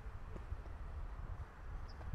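Wind rumbling on the microphone in uneven gusts, with a few faint footsteps on asphalt.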